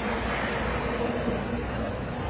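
Road traffic: a vehicle going past on the street, a steady noise of tyres and engine.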